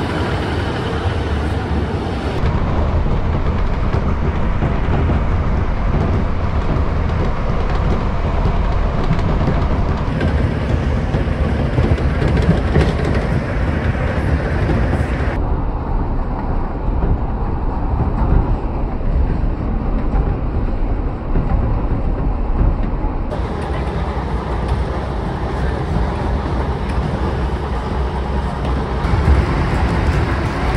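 Passenger train running along the line, heard from inside the carriage: a steady low rumble of wheels on the rails. A few abrupt changes in tone, where short clips are joined.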